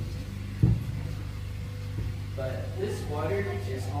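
A steady low hum runs under two short thumps in the first second. A tour guide starts speaking about halfway in.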